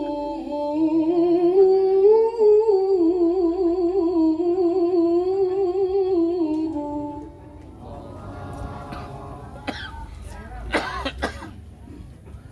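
A woman reciting Quranic verses in the melodic tilawah style through a microphone, holding one long ornamented phrase with a wavering, trilling pitch that ends about seven seconds in. After it comes a quieter stretch of background noise with a few short sharp sounds near the end.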